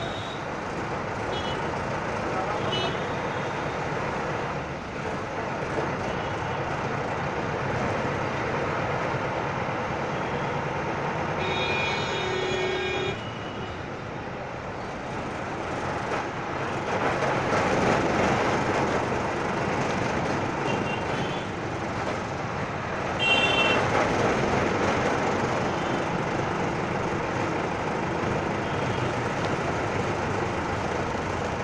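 Ride noise inside an Ashok Leyland Stag minibus moving slowly in traffic: the bus's diesel engine running and road noise. Vehicle horns honk a few short toots early on, one longer honk of over a second about twelve seconds in, and another near twenty-three seconds.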